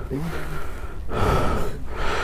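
A man breathing hard and gasping close to the microphone: a short voiced catch of breath near the start, then a long breathy exhale around the middle, over a low steady rumble.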